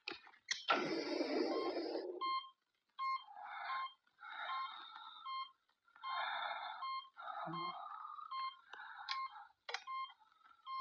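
A hospital patient monitor beeping steadily, a short pitched beep repeated about twice a second, over harsh, laboured breaths drawn through an oxygen mask about once a second, the first and longest breath coming early.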